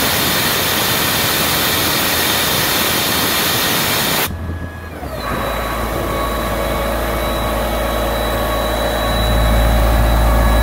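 A loud steady hiss cuts off about four seconds in. The Ingersoll Rand P185WJD compressor's John Deere diesel engine then starts up and runs, with a steady high whine over its low running note, growing louder near the end.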